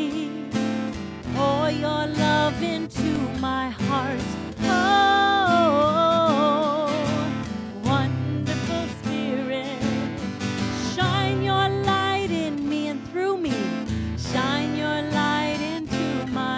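A woman singing a slow song into a microphone over acoustic guitar accompaniment, with long held notes sung with vibrato.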